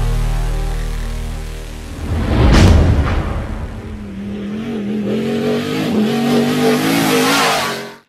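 A sustained electronic music note fading out, then a sweeping whoosh-and-hit about two and a half seconds in. After that comes a car engine revving up and down as a logo sound effect, which cuts off abruptly at the end.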